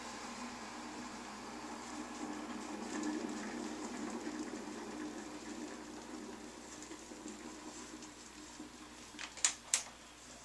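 Handheld My Little Steamer garment steamer running with a steady hum and hiss that fades gradually as it starts to give trouble. Two sharp clicks close together near the end.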